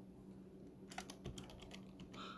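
Faint computer-keyboard typing: a quick run of key clicks about a second in, as a name is typed into a search box.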